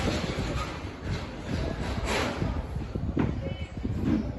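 Steady low background rumble and hiss, with a couple of faint light clicks, like a plastic spoon touching a jar and a steel scale pan.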